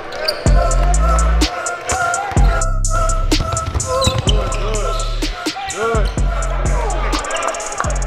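Basketballs bouncing on a gym floor during practice, with many sharp knocks, over music with deep, sustained bass notes.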